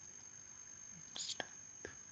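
Faint stylus strokes on a tablet over quiet room hiss: a short soft scratch about a second in, then two light clicks.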